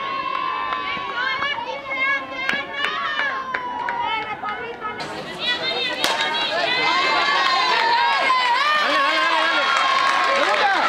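Many high-pitched girls' and women's voices shouting and cheering from the dugouts and stands during a softball game, growing louder and denser in the second half. About six seconds in there is a sharp crack of the bat hitting the ball.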